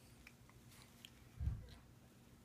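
Faint wet mouth and lip clicks of a baby eating spoon-fed cereal, with one soft low thump about one and a half seconds in.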